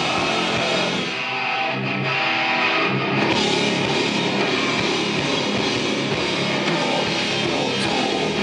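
Live post-metal band playing loud, distorted electric guitars over bass and drums. About a second in the low end drops back, leaving sustained guitar notes, and the full band comes back in about three seconds in.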